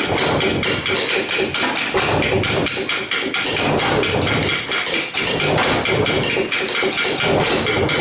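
A percussion ensemble of djembes and other hand percussion playing a fast, steady beat of struck strokes, many per second without a break.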